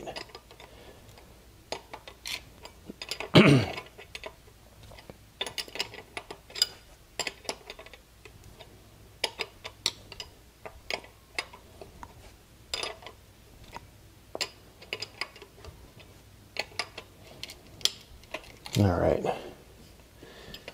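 Irregular small metal clicks and clinks of a brake hose fitting and a combination wrench being worked against a new brake caliper as the hose is threaded in and snugged.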